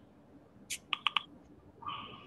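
Faint, garbled fragments of a remote voice breaking up over a poor video-call connection: a short hiss, three quick blips about a second in, then a short thin tone near the end, heard instead of normal speech.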